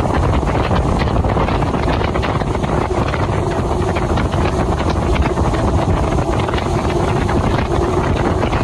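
Wind buffeting the microphone of a vehicle moving at road speed, over a steady engine and tyre drone; a faint steady hum joins in during the second half.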